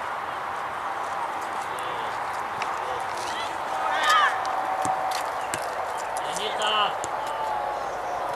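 Short shouts and calls from players and onlookers at a youth football match, loudest about four seconds in and again near seven seconds, over a steady background hiss with scattered sharp clicks.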